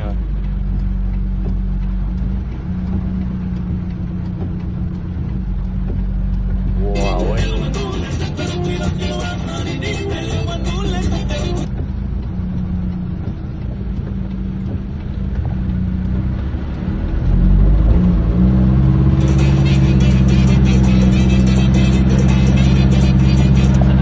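Car engine running while the car drives through a flooded street in heavy rain; its hum shifts and grows louder about 17 seconds in. Voices or music come in twice, about 7 and 19 seconds in.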